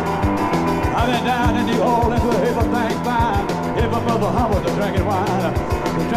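Live rock and roll band playing with a steady beat, with a lead line of bending, wavering notes over it from about a second in.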